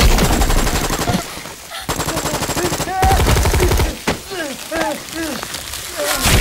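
Rapid automatic gunfire in two long bursts, the second stopping about four seconds in.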